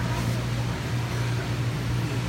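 Steady low mechanical hum under a constant hiss: the background machinery noise of a store floor full of running aquarium tanks.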